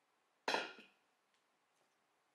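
A single sharp clink of a glass container knocked or set down on the kitchen counter about half a second in, ringing briefly.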